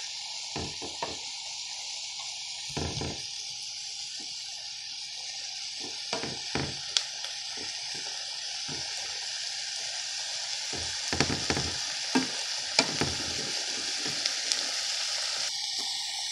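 Chopped green bell peppers, onions and garlic sizzling in olive oil in a skillet, with a steady hiss. A wooden spatula stirs and scrapes against the pan in short strokes, which come more often in the second half.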